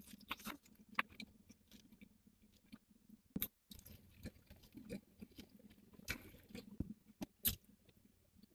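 Close-up chewing of a mouthful of soft-shell crab spider hand roll: quiet, irregular mouth clicks and smacks, with a few louder ones.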